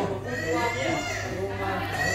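Several people talking at once, their voices overlapping, over a steady low hum.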